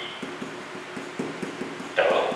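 Pen tip tapping and stroking on an interactive whiteboard screen while characters are written: a fast run of soft ticks.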